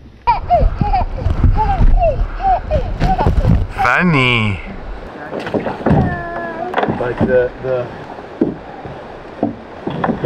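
Small children's voices: a string of short high-pitched calls, a long wavering squeal about four seconds in, then more babbling, over a low wind rumble on the microphone.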